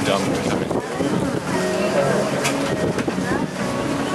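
Duck boat's engine running steadily as it cruises on the river, with wind on the microphone and faint voices in the background.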